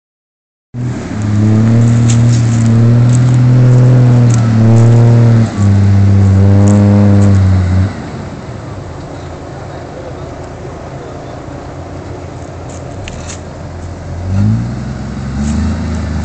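A loud, steady, low drone for the first half that cuts off suddenly about eight seconds in, then a quieter stretch with a few clicks. Near the end the Toyota LandCruiser's diesel engine revs up with a rising pitch as the 4x4 drives along the muddy track.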